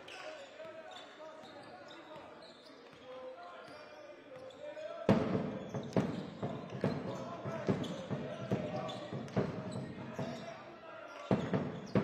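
Basketball being dribbled on a hardwood court in an indoor arena, steady bounces about twice a second starting about five seconds in, with a louder thud near the end. Voices of players and spectators are heard throughout.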